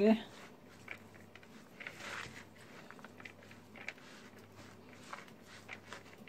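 Metal spoon stirring grated potato and grated white cheese in a plastic bowl: quiet, soft rustling of the shreds with light, irregular clicks and scrapes of the spoon against the bowl.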